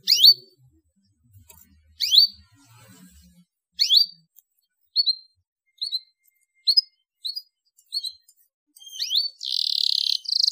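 Domestic canary giving short rising chirps, about two seconds apart at first and then about once a second, breaking into a fast trill near the end.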